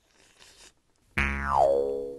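Cartoon sound effect about a second in: a sudden pitched tone, rich in overtones, that slides steadily down in pitch over about a second and fades.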